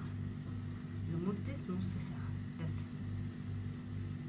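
A steady low hum that pulses about twice a second, under brief snatches of speech.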